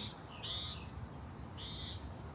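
A bird calling twice outdoors: two short, high calls about a second apart.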